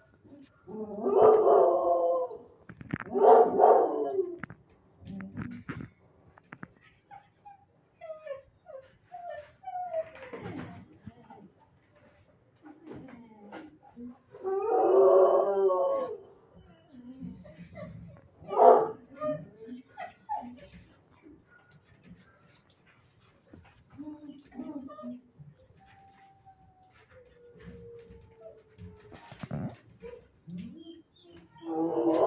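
Dogs in a shelter kennel howling and whining in several drawn-out calls, two close together at the start and another about halfway through, with a short sharp yelp a few seconds after that and fainter whines between.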